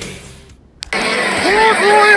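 Rock music fades out into a short near-silent gap broken by a single click. About a second in, a steady noise bed starts, and an announcer's voice begins over it.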